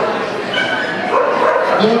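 A dog barking, with people's voices in a large hall.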